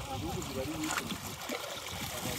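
Lake water splashing and lapping around a fisherman wading beside a wooden dugout canoe as he works a fishing net, with people talking.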